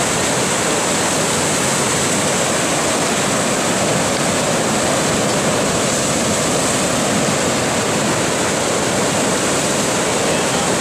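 Big Thompson River in flood, pouring over and off the edge of a submerged road bridge: a loud, steady rush of water that never lets up.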